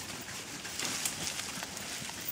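Leafy branches and twigs rustling and swishing as a horse pushes its head and chest through them, with faint scattered crackles of twigs.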